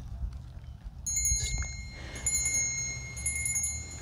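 A high, bright metallic ringing like a small chime, struck about three times roughly a second apart, each ring lingering. A steady low rumble runs underneath.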